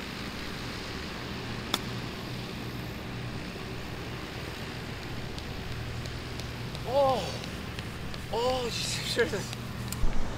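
A golf club strikes the ball once on a chip shot, a single sharp click about two seconds in, over a steady low background hum. Near the end a man gives a few short, rising-and-falling exclamations as the ball runs out.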